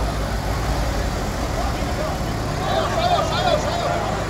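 Farm tractor diesel engine idling steadily, with a crowd talking over it.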